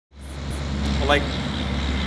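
A steady low rumble that fades in at the start, with a man saying a single word about a second in.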